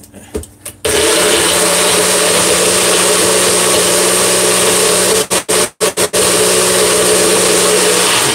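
A NutriBullet personal blender starts about a second in and runs steadily, crushing dates into a thick pumpkin and coconut-milk mix. It cuts out several times in quick succession around five to six seconds in, then runs on again.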